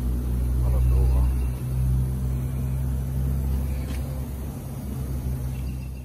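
Steady low machinery hum in a body shop, with faint voices about a second in.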